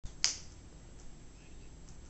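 A single sharp click about a quarter second in, then quiet room tone.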